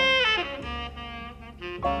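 Tenor saxophone playing live jazz. A long held note bends down and fades about half a second in, then the playing goes quieter over low bass notes until a new loud note starts near the end.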